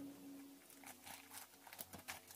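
Near silence, with a few faint, brief clicks and rustles from a small plastic zip-lock bag being handled.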